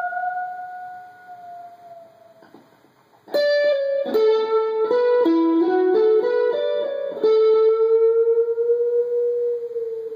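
Stratocaster-style electric guitar playing a slow single-note lead. A held, slightly bent note fades away over the first two seconds. After a short pause, a quick run of notes leads into a long sustained note that bends slightly upward.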